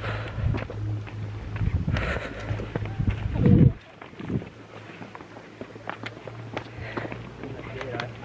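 Wind buffeting the microphone, swelling loudest about three and a half seconds in and then dropping away suddenly, over footsteps on rock and faint voices of people nearby.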